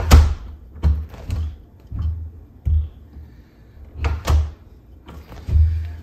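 An interior door on a newly fitted spring hinge being worked open and shut against its frame, giving a string of knocks and thuds, the loudest at the start and the rest coming about once a second.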